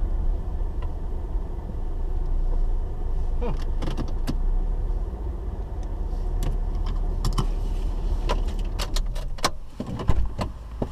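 Car engine idling with a steady low rumble, heard from inside the cabin of the stationary car, with scattered light clicks and rattles, a cluster a few seconds in and more in the second half.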